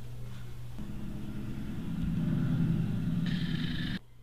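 A low, engine-like rumble that starts about a second in and swells louder over the next second or so. A brighter hiss joins it near the end, and it all cuts off abruptly.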